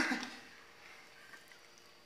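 The tail of a man's exclamation, then near quiet with faint handling sounds as a paper waxing strip is pressed and smoothed by hand onto hot wax on a leg.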